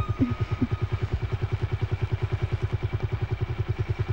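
Motorcycle engine idling with an even, rapid beat of about twelve pulses a second.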